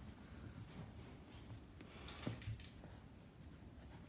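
Faint, soft handling sounds of hands pressing and turning a stuffed crocheted pot, over quiet room tone, with a small soft tap a little after two seconds.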